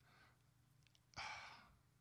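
Near silence, with one soft breath from a man at a close microphone a little over a second in.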